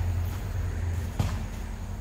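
Low, steady motor-vehicle engine rumble that fades out a little over a second in, with a single sharp click as it fades.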